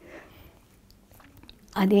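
A short pause in speech with a breath and a few faint mouth clicks, then speech resumes near the end.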